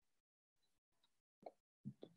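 Near silence: faint hiss on a video-call microphone, cutting in and out, with two short faint pops near the end.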